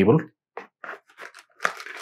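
Short crinkles and rustles of plastic packaging and a cardboard box being handled as items are drawn out of the box.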